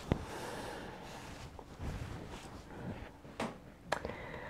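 A quiet room with a few small clicks: one just after the start and two close together near the end.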